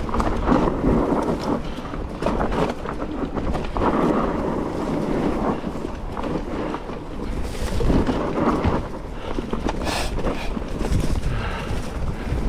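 Mountain bike being ridden on dry grassy singletrack: wind buffeting the action-camera microphone over the rolling rumble of knobby tyres on dirt, with irregular knocks and rattles from the bike over bumps.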